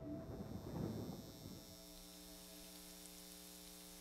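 The tail of a loud boom dies away over about the first second and a half, leaving a faint steady hum.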